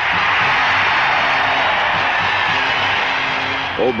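Stadium crowd cheering a successful field goal, a loud roar that breaks out suddenly and eases off toward the end, over a film music bed.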